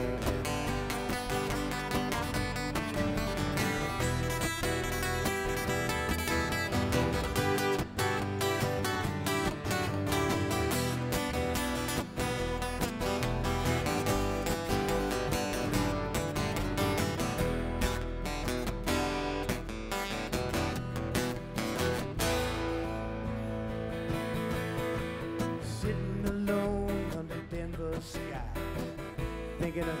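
Live country band playing an instrumental break: acoustic guitars strumming and picking over upright bass and drums, with the sound thinning out for a few seconds about two-thirds of the way through.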